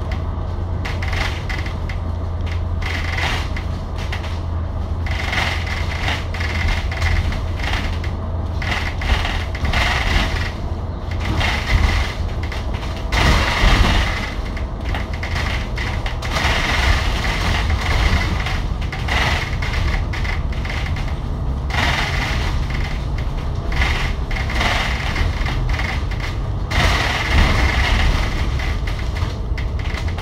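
Inside a moving Alexander Dennis Enviro500 MMC double-decker bus: the Cummins L9 diesel engine drones steadily under road and tyre noise, and the bus's interior fittings rattle and tick quickly as it travels along and down an expressway ramp.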